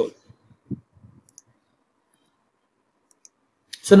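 A few faint clicks of a computer mouse, scattered through an otherwise quiet pause, followed by the start of a spoken word near the end.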